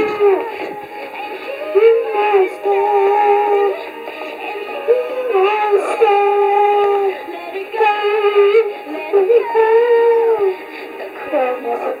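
A young girl singing a melody of long held, wavering notes into a toy karaoke machine's microphone, her voice amplified through its small speaker with a thin sound lacking any low end.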